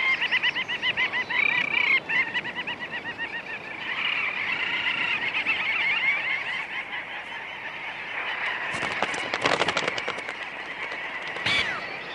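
Breeding colony of little auks calling on a sea cliff: many birds overlapping in a dense chatter of short, quickly repeated rising-and-falling calls. About nine seconds in comes a spell of crackling noise.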